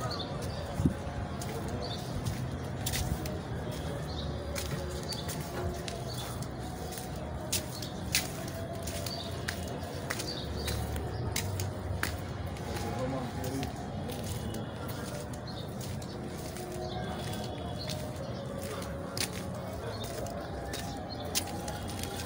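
Street background noise with faint distant voices and scattered sharp clicks and footsteps from walking along a dirt lane.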